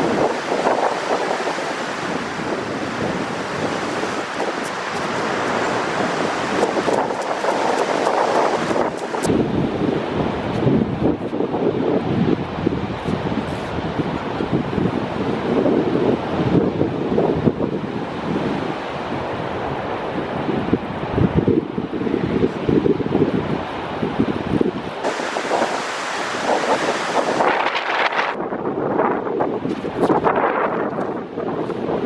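Wind on the microphone over the steady wash of ocean surf breaking on the beach; the wind noise eases about a third of the way in and picks up again near the end.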